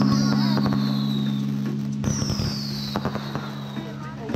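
Consumer aerial fireworks popping and crackling over background music whose held low chord slowly fades out. Two high whistles fall in pitch, one near the start and one about halfway through.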